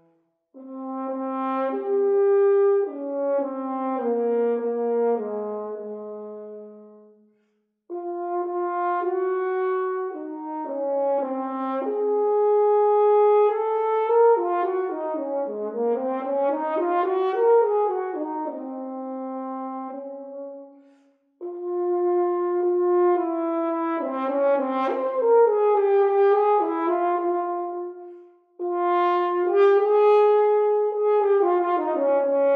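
Solo French horn playing a slow, lyrical melody in long phrases, with short breaks for breath about half a second, seven and a half, twenty-one and twenty-eight seconds in. In the middle, a quicker run of notes climbs and falls.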